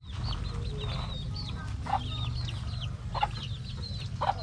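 Chickens clucking, with many short, high chirps throughout and a few louder calls about two and three seconds in, over a steady low rumble.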